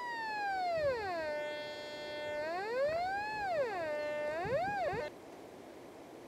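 Nokta Force metal detector's pinpoint tone as the coil is moved over a small metal target. It glides down in pitch, holds steady, then rises and falls twice, and cuts off suddenly about five seconds in. The tone grows louder and changes pitch near the target, and the point where it is strongest marks the target's centre.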